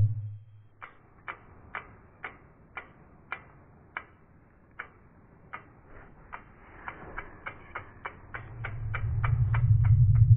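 Logo-intro sound effect: a row of sharp, clock-like ticks, about two a second, that quicken after about seven seconds, while a low rumble swells in over the last couple of seconds.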